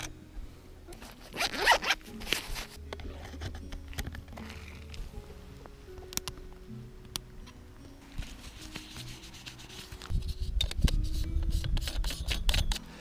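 Hands handling a Canon DSLR and a square lens-filter holder: scattered sharp clicks and rustling, with a louder stretch of rough rustling from about ten seconds in. Soft background music with held notes runs underneath.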